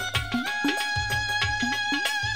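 Instrumental passage of a Bengali folk (bicched/baul) song: a held melody line that steps up a little about half a second in, over a steady hand-drum rhythm whose low strokes bend upward in pitch.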